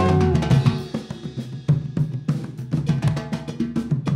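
Afro-jazz band playing live, with tall rope-tuned atabaque hand drums and a drum kit in front in a dense, steady groove over low pitched notes. A few held higher instrument notes sound near the start.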